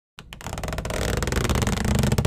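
Intro-animation sound effect: a dense, noisy swell that starts suddenly and grows steadily louder, with a rapid fine flutter running through it.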